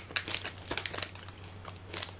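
Foil wrapper of a protein bar crinkling in the hand, a scatter of small crackles, with chewing.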